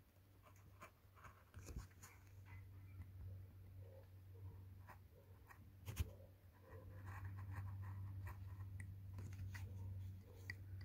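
Craft knife blade scratching and ticking faintly as it cuts through masking tape on a painted board, with one sharper click about six seconds in. A low steady hum runs underneath.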